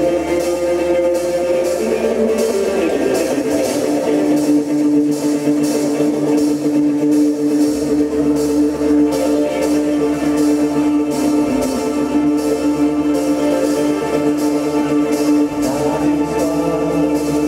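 Live rock band playing: electric guitar, bass guitar, drum kit and keyboard, with held notes over a steady drum beat.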